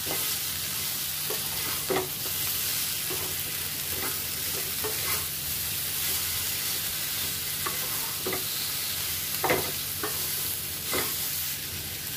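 Elephant apple slices sizzling as they fry with spices in a nonstick pan, stirred with a wooden spatula. The spatula gives a short scrape or knock against the pan now and then.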